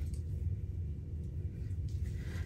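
Steady low background rumble, with a few faint soft handling noises as a lace wig is worked in the hands.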